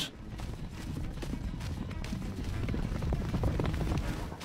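Hooves of running wildebeest drumming on dry ground, a dense, steady run of low thuds, with background music.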